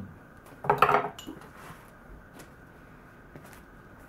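A steel knife blade scraping and clattering against palm frond pieces on an end-grain wooden cutting board in one short burst a little under a second in, followed by a few faint taps as the knife is set down.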